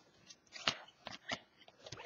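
Hockey trading cards being slid and flipped through by hand, a handful of short, soft flicks of card against card.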